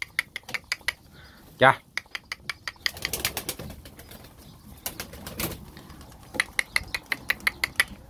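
Pigeons moving about a loft: bursts of quick, sharp taps, several a second, with wing flapping as birds take off and land.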